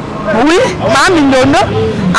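Speech: a woman's voice talking loudly, with wide swings in pitch.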